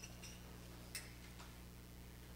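Faint clinks and ticks of small brass hand cymbals (kartals) being handled and their cord sorted out, with a sharper metallic click about a second in. A steady low hum runs underneath.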